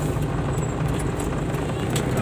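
Cargo truck's engine running steadily under way, with a low rumble and road noise, heard from inside the cab.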